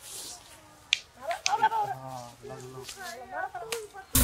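Quiet speech with a few sharp clicks or snaps, one about a second in and another near the end.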